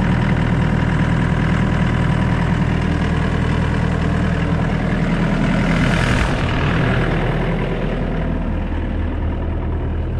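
Yanmar ViO80-1A mini excavator's four-cylinder diesel engine idling steadily, with a rushing hiss that swells briefly about six seconds in.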